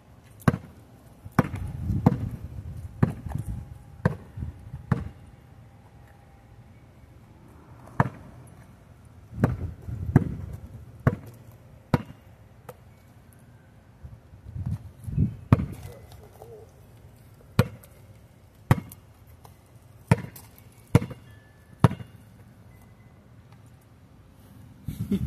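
Basketball dribbled on a paved driveway: sharp single bounces, irregularly spaced at roughly one a second, in short runs with pauses between them.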